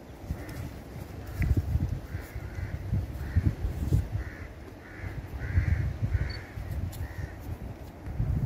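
A bird calling repeatedly: a series of about ten short calls spaced under a second apart. Underneath is a gusty low rumble of wind on the microphone.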